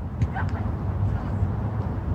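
Steady low outdoor background rumble, with a brief faint call about half a second in.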